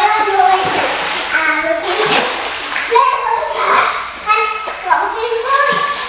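Young girls' high-pitched voices calling out, with water splashing in the first couple of seconds.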